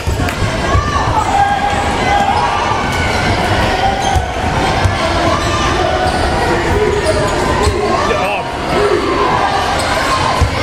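Basketball bouncing and thudding on a hardwood gym floor during a game, amid a steady din of voices from players and spectators in a large gym.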